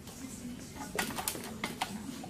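A quick run of about five light clicks and taps about a second in, from hands handling the sewing machine and its thread, over a faint steady hum.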